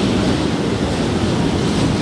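Wind buffeting the microphone: a loud, steady low rushing rumble that rises abruptly at the start.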